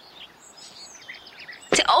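Quiet background room tone with a few faint high sounds, broken near the end as a woman starts speaking.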